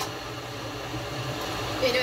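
A steady low hum of indoor background noise, with a voice starting near the end.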